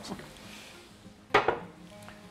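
Sliced mushrooms tipped from a glass bowl into a skillet of onions, with a faint sizzle from the pan. About one and a half seconds in comes a sharp double clink of the glass bowl.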